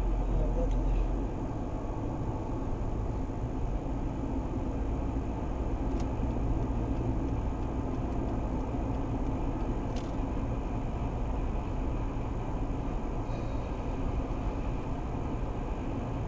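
Steady road and engine noise of a Mercedes-Benz car cruising at about 65 km/h, heard from inside the cabin, with a deeper rumble in the first second. Two faint clicks come near the middle.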